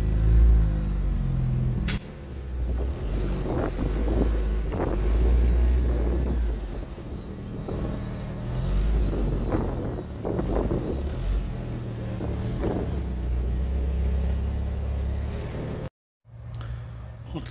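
Mitsubishi Lancer Evo V's turbocharged four-cylinder engine running at low revs as the car creeps out of the garage under its own power, with a few short crackles over the steady engine note.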